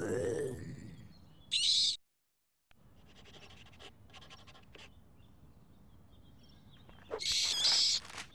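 Cartoon sound effects for an animated logo: a hoot-like call at the start, then short hissing rushes a little over a second in and again near the end. A brief dead-silent gap comes about two seconds in, followed by faint clicking.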